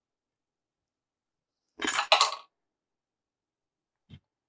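One short double clink of a small metal tool being handled, about two seconds in, while the thread ends of a rod wrap are trimmed.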